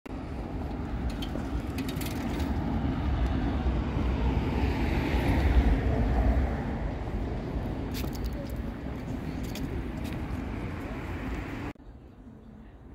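Street traffic noise, with a vehicle passing that is loudest about halfway through and then fades, plus a few short clicks. The sound cuts off abruptly just before the end.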